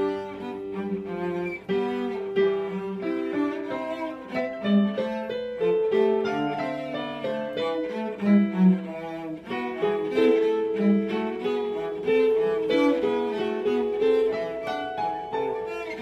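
Cello playing a bourrée, a quick succession of bowed notes, with piano accompaniment.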